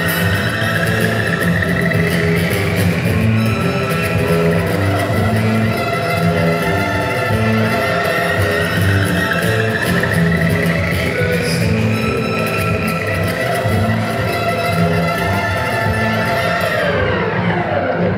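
Amplified steel-string acoustic guitar played as a solo instrumental, with a steady, dense stream of picked notes.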